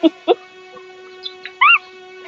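Short, high-pitched animal cries: a brief pitched call near the end that rises and falls, with two short sharp sounds near the start. Background music with steady held notes plays under it.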